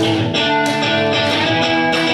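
Live rock band playing: electric guitars strumming sustained chords over drums.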